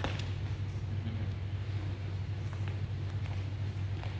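A steady low hum, with a few faint soft knocks and rustles as two wrestlers move on and push up from a wrestling mat.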